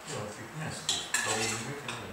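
A few sharp clinks and a clatter of a thermos flask and cup being handled during a picnic, the loudest about a second in and one more near the end.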